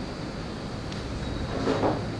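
Steady low background rumble. Near the end comes a short, louder rush of noise as thick jalebi batter is ladled into a cloth piping bag.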